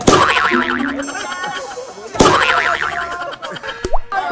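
Two sharp smacks of an empty plastic bottle striking a person, about two seconds apart, each followed by a wobbling boing.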